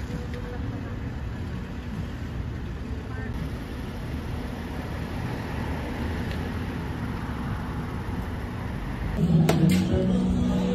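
Steady rumble of road traffic outdoors. Near the end a door clicks open and music from inside comes in loudly.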